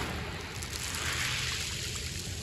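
Small waves washing up a pebble beach and draining back through the stones with a soft, trickling hiss.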